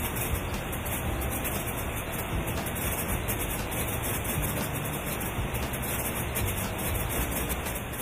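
Steady machine noise of a blueberry sorting line: conveyor belts running with a low rumble and an even hiss.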